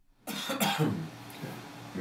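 A man coughing and clearing his throat: a rough burst about a quarter second in, then a quieter, raspy trail.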